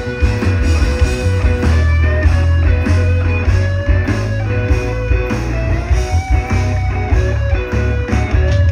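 Live rock band playing an instrumental passage, heard from the audience: electric guitars holding and bending notes over bass and drums.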